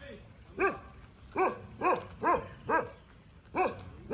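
A dog barking repeatedly: six short barks, each rising and falling in pitch, most of them about half a second apart.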